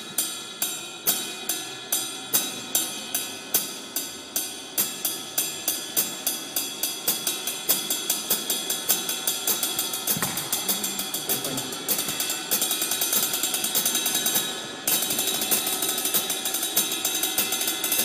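One-handed drumstick strokes on a cymbal played with the push-pull (up-stroke and down-stroke) technique: slow, even hits of about two a second that gradually speed up into a near-continuous roll, with a brief break near the end before it resumes.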